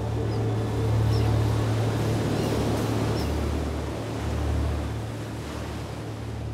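Ocean waves washing and breaking, a steady rushing wash over a sustained low drone from the closing music. The sound fades gradually over the last second or so.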